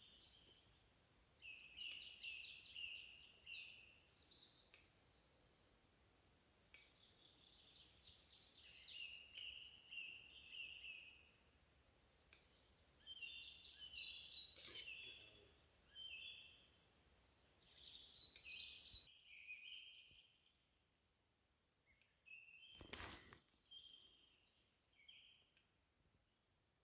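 Faint bird song in a pine forest: short, high trilled phrases repeated every four to five seconds. About three seconds before the end, one brief soft knock.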